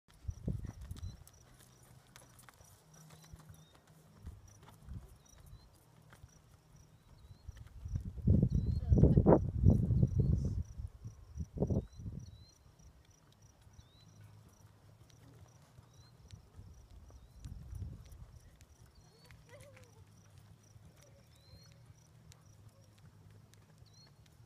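Hoofbeats of a buckskin American Quarter Horse mare and a second horse loping on soft arena dirt, faint and irregular. A louder low rumble swells for a couple of seconds around the middle.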